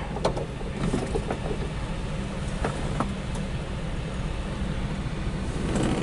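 Cabin sound of a 1977 Volkswagen Sunliner campervan on the move: its rear-mounted air-cooled flat-four engine running with a steady low drone, with a few faint clicks.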